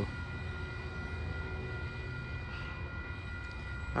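Steady low rumble of distant vehicles, with a few faint, steady high-pitched tones over it.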